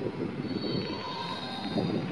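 Low, steady background rumble with a faint high whine through the middle of it.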